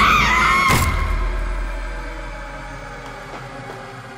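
A dramatic music sting: a high wavering swell cut by a sharp hit under a second in, then a long fade-out.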